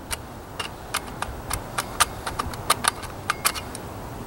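An irregular run of sharp light metallic clicks and rattles as the hatchet head of a cheap 6-in-1 camp tool is handled and worked off its tubular metal handle, which has just started to bend.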